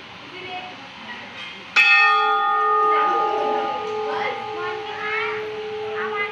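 A single strike of a temple bell about two seconds in, ringing on with a long, slowly fading tone over faint background voices.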